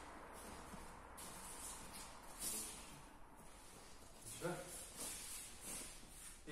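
Faint rustling of cotton martial-arts uniforms and soft movement on the mats as two people get up from kneeling, over a steady hiss. A brief voice sound comes about four and a half seconds in.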